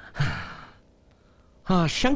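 A man's breathy, sighing laugh falling in pitch about a quarter second in, then a short pause, and a loud burst of laughter near the end.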